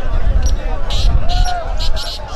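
Voices speaking over a crowd, with heavy, uneven low rumble and thumps underneath.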